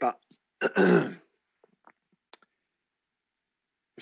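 A man clearing his throat once, loud and brief, about half a second in, while pausing to gather his thoughts; a couple of faint clicks follow in otherwise near silence.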